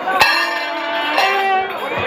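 Temple festival music: a sustained reed-like melody that shifts pitch partway through, punctuated by sharp ringing strikes, one just after the start and another at the end.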